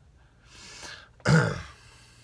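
A man clears his throat once, about a second and a half in.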